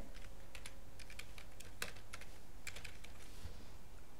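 Computer keyboard being typed on: a quick, irregular run of key clicks as a short name is entered.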